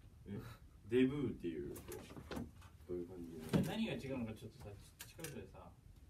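Men talking and laughing casually, with a few light clicks in between.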